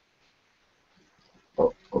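Near silence, then a man's short "oh" twice in quick succession near the end.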